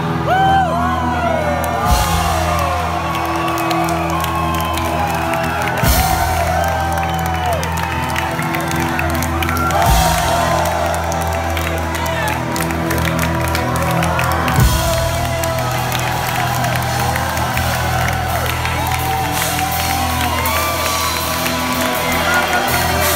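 Live rock band playing, with held low notes and a drum hit about every four seconds, under a crowd whooping and cheering close to the microphone.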